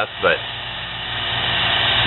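Small homemade lathe's cheap electric motor running steadily, spinning a plastic workpiece: a steady hum with a low tone that grows gradually louder over the second half.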